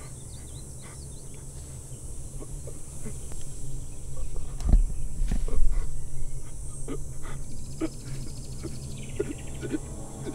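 A wounded young man's pained breathing and groans over a low, steady rumble, with scattered rustles and a heavy low thump about five seconds in.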